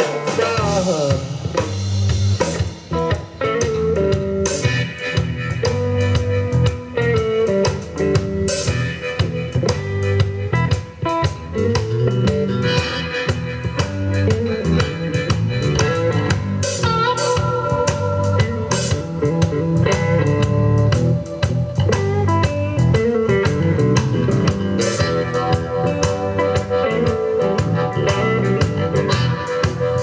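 Live blues band playing an instrumental passage with a steady beat on drum kit, with bass and electric guitar, and a harmonica played cupped against the vocal microphone.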